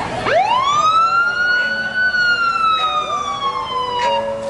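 An emergency-vehicle siren sounding one long wail: its pitch climbs quickly at the start, peaks about halfway through, then slowly falls.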